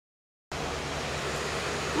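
Dead silence for about half a second, then a steady rushing hiss of outdoor background noise on the microphone begins and holds.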